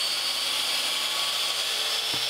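Electric miter saw running at full speed with a steady high whine as its blade cuts through a strip of walnut.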